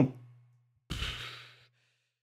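A person sighing into the microphone: one breathy exhale about a second in that fades out over most of a second.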